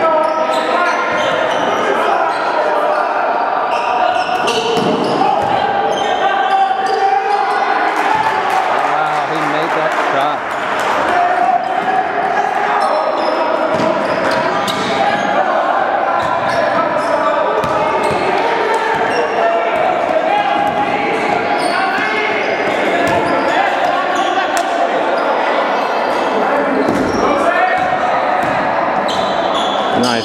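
A basketball bouncing on a hardwood gym floor during play, many short thuds, under a constant hum of indistinct voices from players and spectators in the hall.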